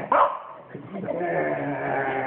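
French bulldog vocalising in play: a short sharp yelp right at the start, then a long, steady drawn-out moan from about a second in.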